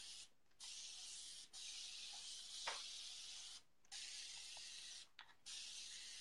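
Near silence: a faint, steady hiss of background noise that cuts out completely four times for a moment, with one faint knock a little before the middle.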